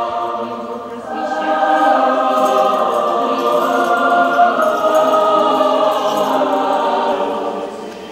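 A choir singing slow Orthodox church chant, several voices holding long chords. It dips briefly about a second in and fades out near the end.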